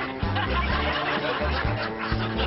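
Canned laugh track of chuckling and snickering over upbeat comedy background music with a bouncing bass line.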